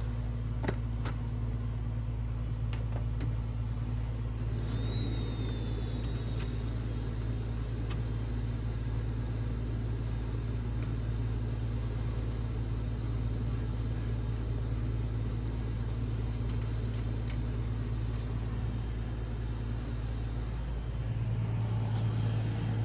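Epson P4900 inkjet printer running during a print, a steady low mechanical hum with a few faint clicks and a brief high whine about five seconds in.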